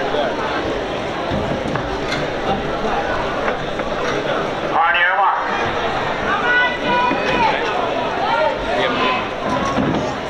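Stadium crowd chatter with a short, rising electronic tone halfway through, the loudest sound: the start signal for a hurdles heat. Voices call out over the crowd just after it.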